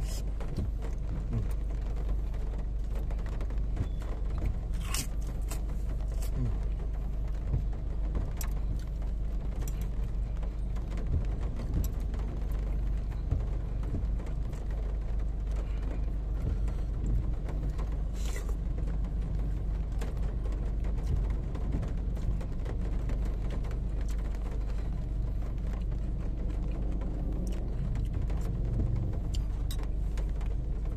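Steady low rumble of a car cabin, with a few short clicks and soft eating sounds as a metal spoon works in a bowl of soup.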